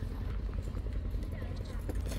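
Engine of the vehicle towing the generator trailer running steadily, a low rhythmic chugging.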